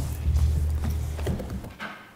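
A low rumble with scattered knocks and thumps from people moving about the room, with footsteps and furniture; it fades near the end.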